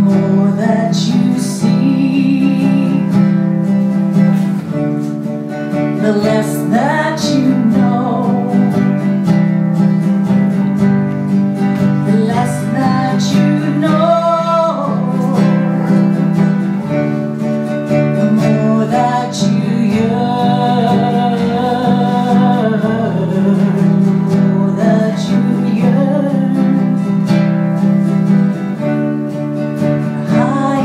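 A woman singing a song, accompanied by a strummed acoustic guitar.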